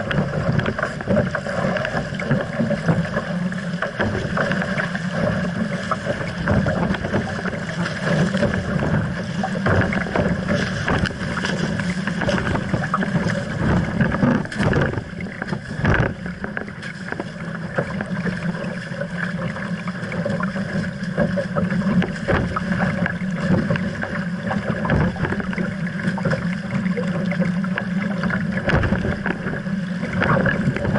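Water rushing and splashing along the hull of an RS Aero sailing dinghy driven hard upwind, with wind buffeting the deck-mounted microphone. Frequent sharp slaps of waves and spray run through it, a few stronger about halfway through.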